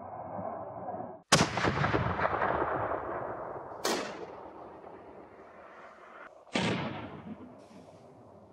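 Rifle shots from a Bergara Premier Highlander in .300 Winchester Magnum fitted with a muzzle brake: a loud report about a second in that rolls and echoes off the hills for a couple of seconds, followed by two more sharp reports a few seconds apart, each with a fading echo.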